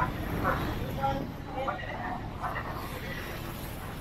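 Town street traffic, a steady low rumble with motorcycles passing, under scattered snatches of people's voices.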